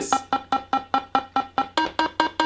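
Soviet vintage toy synthesizer, recorded through its own small speaker and EQ'd, playing a quick line of short, snappy notes at changing pitches, about five a second, each starting with a click and dying away fast.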